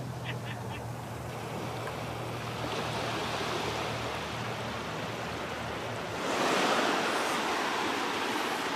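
Ocean surf washing up over wet sand: a steady wash that swells louder about six seconds in as a wave runs up the beach.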